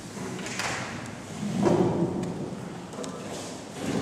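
Microphone handling noise as a microphone stand is grabbed and adjusted: a short rustle, then a dull bump about a second and a half in, and a smaller knock near the end.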